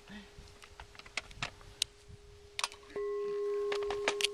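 Crystal singing bowl ringing with a steady, pure tone, struck with a mallet about three seconds in so that the ring jumps suddenly louder and carries on. Light clicks and taps come and go throughout.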